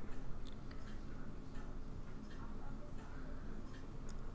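Small irregular clicks and taps as a watch stem and crown are worked back into a quartz watch movement in its metal case, over a low steady hum.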